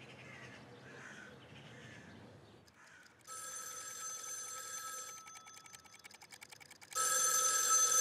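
Landline telephone bell ringing for an incoming call: one ring about three seconds in, then a second, louder ring about seven seconds in.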